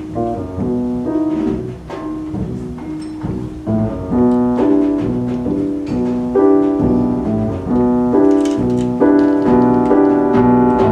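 Grand piano played live in a jazz trio: a repeating figure of notes in the middle register that grows louder about four seconds in.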